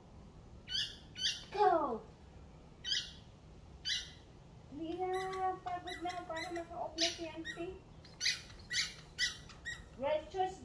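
Squeaky dog toy squeezed again and again, giving short sharp squeaks, some squeals that drop in pitch, and one long wavering squeal about five seconds in that lasts around three seconds.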